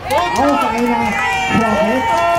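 A voice speaking, with crowd noise behind it.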